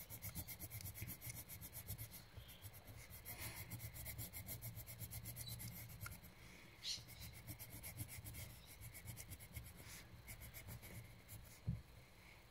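Quick, faint back-and-forth colouring strokes on paper, a dry rubbing of several strokes a second, with a short pause about halfway through.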